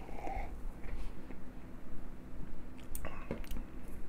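Quiet swallowing and mouth sounds of a man drinking beer from a glass, then a couple of short knocks about three seconds in as the glass is set down on the bar top.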